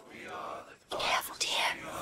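A breathy, whispered voice on a vocal track separated from its music, getting louder and hissier about a second in.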